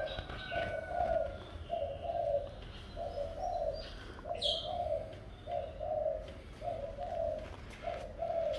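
A dove cooing over and over in a near-continuous run of low, short phrases, with a few faint chirps of small birds and one brief click about halfway through.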